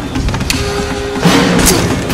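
Film soundtrack dominated by score music, with a sharp hit about half a second in and a few softer knocks from the scene's sound effects after it.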